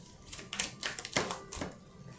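Tarot cards being handled: a quick, light run of clicks and snaps from the cards and fingernails.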